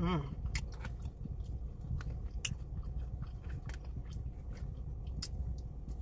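A person chewing a forkful of loaded fries close to the microphone, with scattered short wet mouth clicks and smacks. A steady low hum sits underneath.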